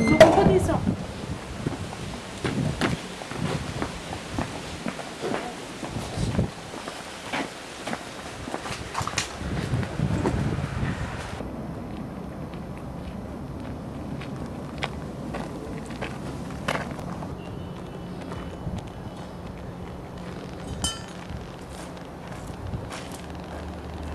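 Outdoor handheld recording: scattered clicks and knocks of footsteps and handling, with indistinct voices. After a cut about halfway through, quieter outdoor background with a steady low hum and a few faint clicks.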